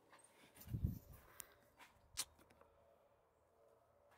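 Quiet room with a soft, low footstep-like thump on a wooden floor about a second in, then a single sharp click near the middle and a few faint ticks.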